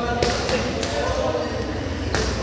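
Boxing gloves hitting focus mitts during a punch combination: two sharp slaps about a quarter and three-quarters of a second in.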